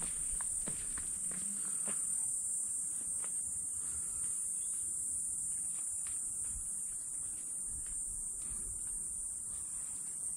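Forest insects keeping up a steady, high-pitched chorus. A few soft steps or clicks on the trail come in the first two seconds.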